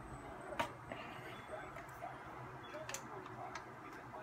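Quiet handling noise: a few sharp clicks and knocks, the loudest a little over half a second in, over a low steady room hum.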